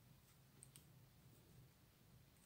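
Near silence with a few faint, short clicks as a fine steel crochet hook and a plastic drinking straw are handled in the fingers while loops are wrapped around the straw.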